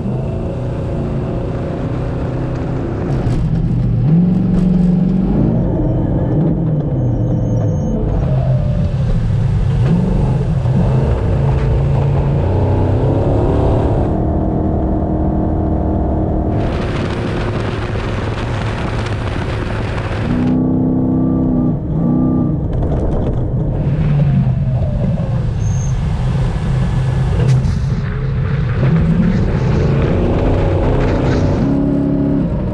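Off-road rally car engine revving hard and shifting through the gears at speed, with pitch climbing and dropping. Stretches of rushing tyre, sand and wind noise swell and fade, two of them about a third of the way in and just past halfway.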